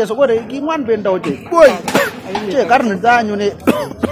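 People talking.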